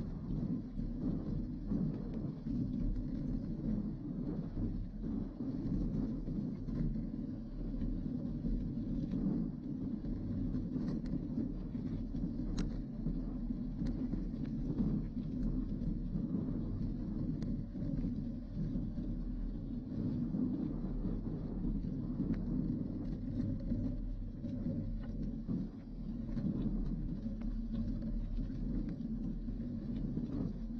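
Steady low rumble of mountain-bike tyres rolling over a rough dirt-and-gravel lane, picked up through a handlebar-mounted camera, with scattered small clicks and rattles.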